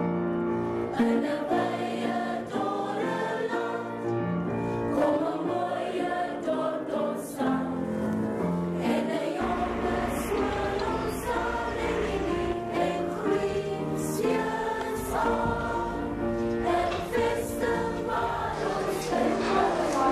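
Background music with a choir singing, sustained notes throughout; a deep bass comes in about halfway through.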